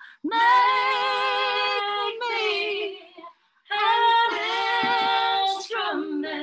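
A woman singing unaccompanied, holding long notes with a wavering vibrato, in two phrases with a short break about three seconds in.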